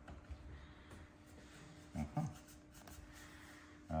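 Faint wood-on-wood rubbing and a few light clicks as a tenon is pressed and wiggled by hand into its mortice.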